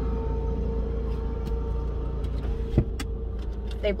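Parking-lot sweeper's engine and blower running, loud: a steady low drone with a constant whine over it, and one sharp knock about three seconds in.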